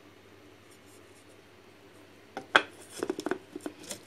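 Clear plastic food-processor bowl being handled: a quick series of sharp clicks and knocks begins about halfway through, after a quiet start.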